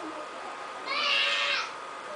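A baby's short high-pitched fussing cry, starting about a second in and lasting under a second.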